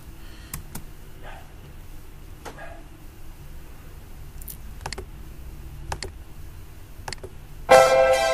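A few sharp, irregular computer mouse clicks over a faint low hum. Near the end, the song's beat comes in loudly with sustained keyboard chords.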